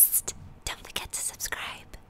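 A person whispering in several short, breathy bursts.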